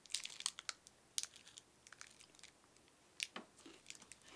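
Foil candy-bar wrapper crinkling in the hand: faint, irregular small crackles.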